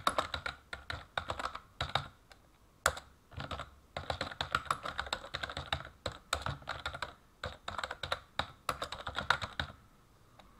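Typing on a computer keyboard: runs of quick key clicks with short pauses between words, and one louder keystroke about three seconds in.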